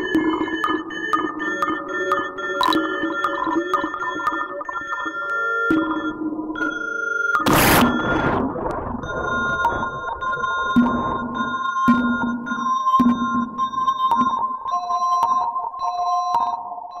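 Hikari Monos CV synthesizer played through a Bastl Thyme effects unit, giving steady synth tones that change pitch every second or so. About seven and a half seconds in there is a short, loud burst of noise, and the tones then carry on.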